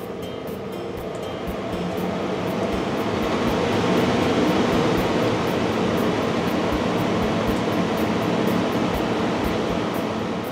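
Blower door fan running as it depressurizes the house: a steady rush of air that builds over the first few seconds and then holds. Music plays faintly underneath.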